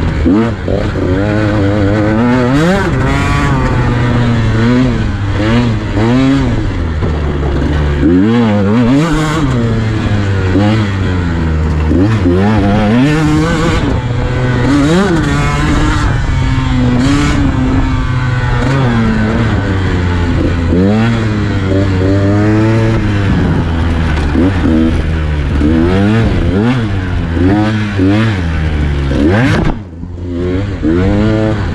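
KTM 150 XC-W's single-cylinder two-stroke engine under way, revving up and down constantly as the throttle is worked and gears change on rough trail.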